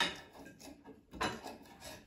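Metal scraping as grilled meat is pushed along a long metal skewer with a utensil, with a sharp click at the start and a knock about a second in.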